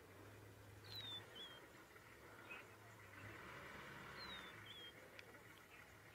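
Near silence with a faint bird call: a short falling whistle followed by a brief note, given twice about three seconds apart.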